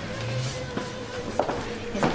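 Restaurant room sound between lines of dialogue: a short low murmured voice early on, a faint steady tone under it, and a couple of light clicks.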